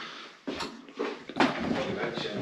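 Two light knocks, about a second apart, and handling noise of small objects being moved on a hard countertop.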